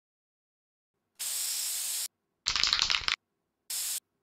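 Three short bursts of static-like hiss separated by dead silence. The middle burst is the loudest and rougher, reaching down into the bass.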